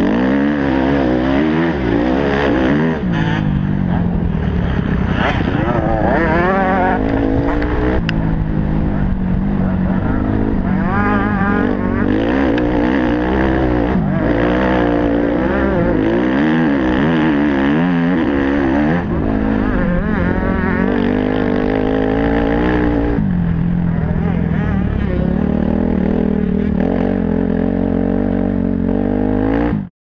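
Motocross bike engine being ridden hard on a dirt track, the revs repeatedly climbing and falling as the rider accelerates and backs off. The sound cuts off at the very end.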